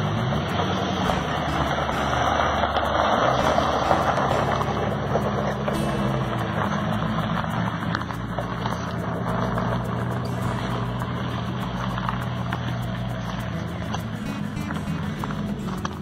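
1988 Chevrolet Corvette's V8 running as the car pulls away down a gravel drive, with tyre noise on the gravel, loudest in the first few seconds and growing fainter as it moves off. Background music plays underneath.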